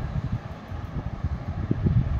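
Low, uneven rumble of moving air buffeting the microphone.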